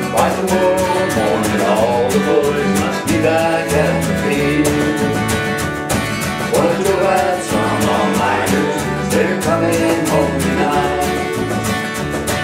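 A small band playing an instrumental passage of a Newfoundland folk song: strummed acoustic guitar, electric bass, cajon and keyboard over a steady beat.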